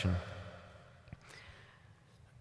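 A man's soft breathing into a close lectern microphone, an exhale trailing off after speech, with a faint click about a second in.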